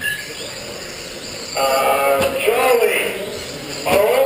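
A man's voice talking indistinctly from about one and a half seconds in, over a steady background hiss.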